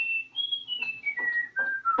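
A person whistling a short tune, heard through a television's speaker: the notes rise to a high note about half a second in, then step down one by one.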